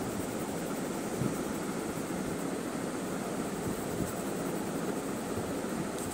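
Steady, even background hiss with no distinct strokes or clicks, like room noise from a fan or air conditioner.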